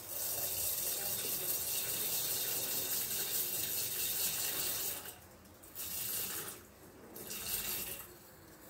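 Dry round-grain rice poured into the steel bowl of a Thermomix: a steady rush of falling grains for about five seconds, then two shorter pours as the weight is topped up toward 300 g.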